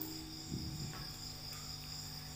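Crickets trilling steadily and faintly in the background, over a low steady hum, with a small soft sound about half a second in.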